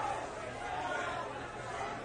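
Indistinct background chatter of several people talking at once, with no single voice standing out.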